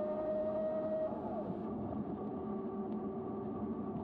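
CYC Photon mid-drive ebike motor whining steadily under power, then cutting off about a second in as the power drops to zero, its pitch falling away briefly. A lower steady hum and rolling noise follow as the bike coasts unpowered.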